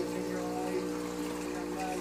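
Steady electrical hum of fish-room aquarium equipment (air pumps and filters), with faint trickling water.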